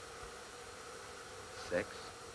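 A steady, faint hum with a thin high tone through a pause in the speech, then one short spoken word near the end.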